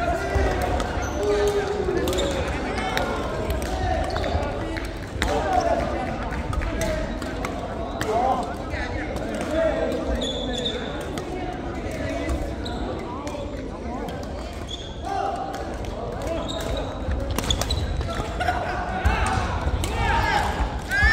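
Badminton play in an indoor hall: rackets striking a shuttlecock with sharp cracks and feet thudding on the wooden court, a few short shoe squeaks, over steady voices of players in the hall.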